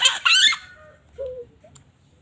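A young girl's loud, high-pitched shrieking laugh, lasting about half a second at the start and followed by a short faint vocal sound.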